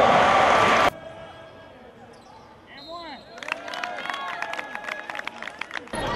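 Loud crowd noise in a basketball gym that cuts off abruptly about a second in. Then, after a quieter stretch, the sounds of play on the court: sneakers squeaking on the hardwood and a basketball bouncing, with many sharp knocks over the last few seconds.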